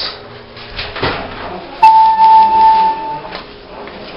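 Elevator signal tone: a single steady electronic beep, sharp at the start, lasting about a second and a half before cutting off.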